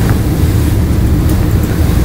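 A steady low rumble of background room noise with no speech.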